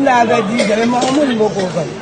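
Speech: a woman talking steadily, her voice rising and falling.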